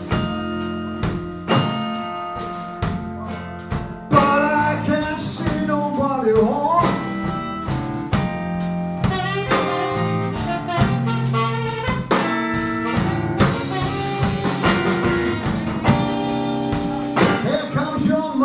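Live blues band playing an instrumental break: a saxophone takes the lead with held and bending notes over electric guitar, bass guitar and a drum kit keeping a steady beat.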